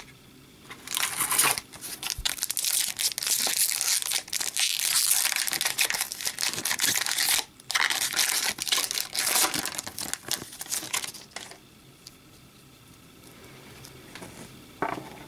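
Foil wrapper of an Upper Deck hockey card pack being torn open and crinkled by hand: a long, dense rustle that starts about a second in, breaks off briefly midway, and stops a couple of seconds before the end.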